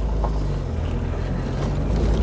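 Jeep engine running with a steady low hum under road and wind noise, heard from inside the moving Jeep.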